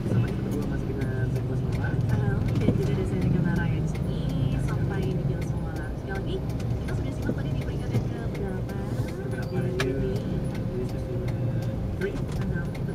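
Car running in slow traffic, heard inside the cabin: a steady low engine and road rumble, with a voice talking over it.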